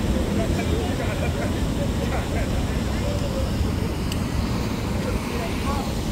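Steady low rumble of city traffic around an open square, with people's voices faintly in the background.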